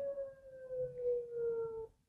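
A man's voice holding one long note that sinks slightly in pitch and stops abruptly after nearly two seconds.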